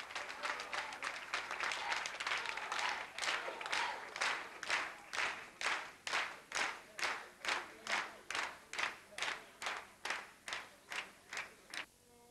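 Audience applause that settles into rhythmic clapping in unison, about two claps a second and speeding up slightly, then stops suddenly near the end.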